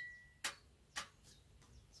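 A swing-top beer bottle being opened: a short ringing tone fades out at the start, then two sharp clicks about half a second apart as the stopper and its wire bail flip back against the glass neck.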